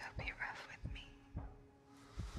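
Soft whispered speech between a man and a woman over a quiet film score: a held low note with a soft low pulse about twice a second underneath.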